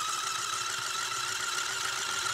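Electric motors of a battery-powered RC stunt car running flat out, a steady high whine with a faint hiss, as the car spins in place on a glass tabletop.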